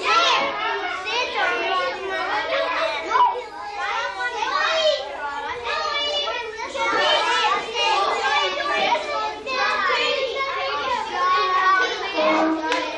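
A roomful of young children talking and calling out over one another, a continuous babble of high voices.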